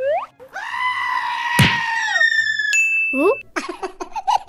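Cartoon sound effects: a quick rising whistle, then a long, high-pitched yell with a sharp hit about a second and a half in, then springy rising boings near the end.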